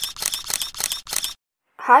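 A rapid run of sharp clicks, about five a second, stopping abruptly a little over a second in, followed by a short dead silence.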